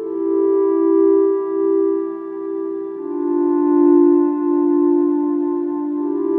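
Roland Aira S-1 synthesizer playing a slow ambient pad: long, smooth held notes, moving to a lower pitch about three seconds in.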